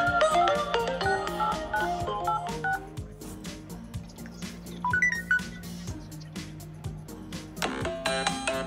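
Touch-tone beeps from an Android smartphone's dial pad as a phone number is keyed in, over a phone ringtone melody. The melody thins out about three seconds in, a few more key beeps come around the middle, and a new ringtone melody starts loudly just before the end.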